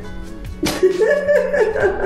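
A person laughing, beginning suddenly about half a second in, over a steady background music bed.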